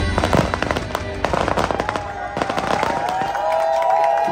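An aerial fireworks display going off in a rapid string of bangs and crackles, thickest in the first three seconds.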